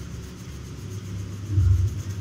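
A steady low rumble that swells briefly near the end.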